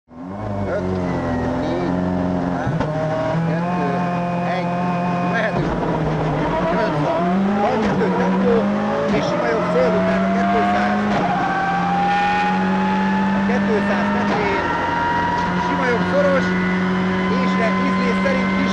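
Ford Focus WRC's turbocharged four-cylinder rally engine, heard from inside the cockpit while the car drives at speed. Its pitch steps up and down through gear changes over the first few seconds, then climbs slowly and steadily as the car accelerates.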